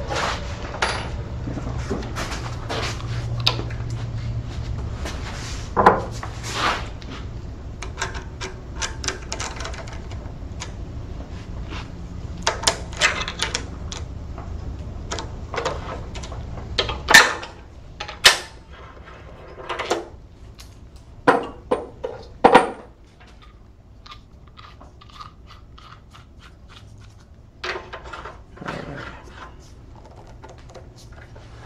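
Wood lathe motor running with a low hum that stops a little over halfway through, amid scattered sharp clicks and knocks of tools and the wooden workpiece being handled; the loudest knocks come just after the hum stops.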